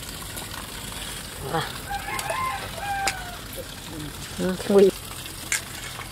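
A rooster crowing once, one drawn-out call about two seconds in. A man's voice saying "hello" in Thai is the loudest sound, near the end.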